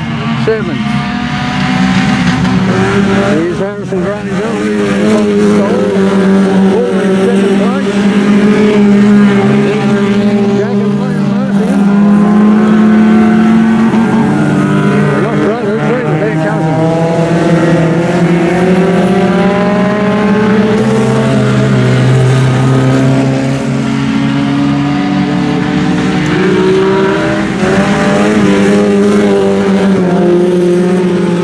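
Several race-car engines running hard together on a dirt speedway, each pitch climbing and dropping as the cars accelerate down the straights and lift for the corners.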